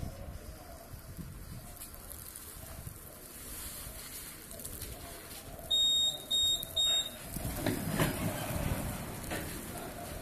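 Three short, high-pitched electronic beeps in quick succession from a warning beeper at a Lely Vector feed robot, given as the automatic barn door beside it opens; a low mechanical rumble follows.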